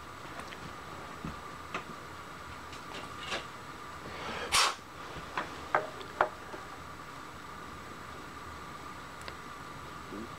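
Light metallic clicks and taps as a small brass valve stem is handled and test-fitted into a steel collet block, with one louder knock about halfway through. A faint steady hum runs underneath.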